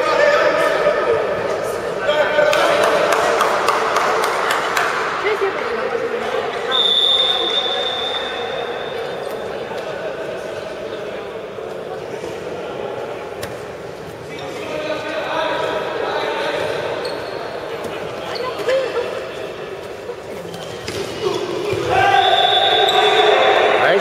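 A handball bouncing on a sports-hall floor, repeated sharp thuds echoing in the large hall, with voices calling out. A steady high tone sounds for about two and a half seconds about seven seconds in, and again briefly near the end.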